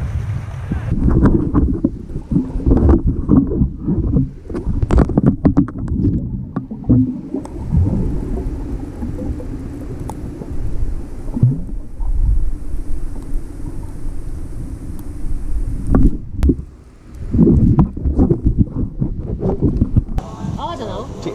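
Water moving around an action camera held underwater, heard through its waterproof housing: a muffled low rumble with scattered clicks and knocks. The sound goes dull about a second in as the camera goes under.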